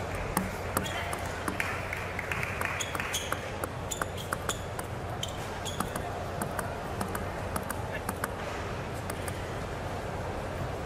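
Arena crowd murmur with many short, sharp clicks scattered through it, among them a table tennis ball bounced on the table before a serve. A steady low hum runs underneath.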